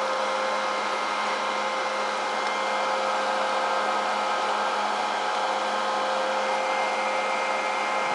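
Steady whirring of cooling fans, with several steady hum and whine tones running through it and no change over the few seconds.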